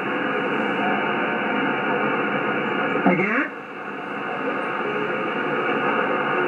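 Icom IC-756PRO II shortwave receiver on the 20 m band in upper sideband: a steady hiss of band noise with faint, jumbled voices of other stations. About three seconds in, a whistling tone sweeps quickly downward, then the noise drops and slowly swells back.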